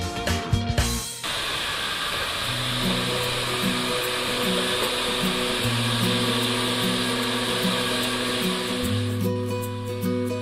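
Handheld hair dryer blowing steadily, starting abruptly about a second in and dropping away near the end, over background music.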